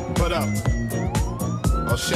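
Disco-house dance track with a steady four-on-the-floor kick at about two beats a second. A siren-like synth tone glides down, then sweeps back up over the beat in the second half.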